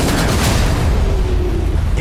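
Film explosion sound: a loud, sustained blast rumble with heavy bass.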